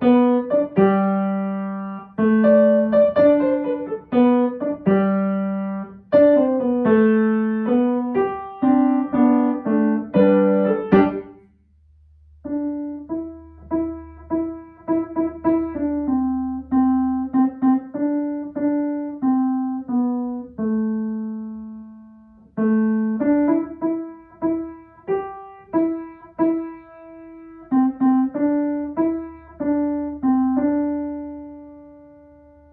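Kawai grand piano playing easy beginner arrangements. A piece of full, loud chords ends about eleven seconds in. After a brief pause, a softer, slower melody of single notes over held bass notes begins.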